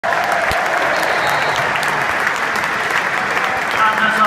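Large football stadium crowd applauding steadily at full time, a continuous wash of clapping from the stands.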